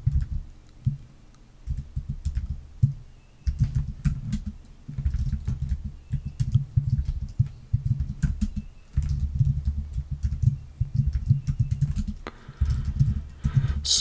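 Rapid typing on a computer keyboard close to the microphone: runs of keystroke clicks in bursts, broken by short pauses.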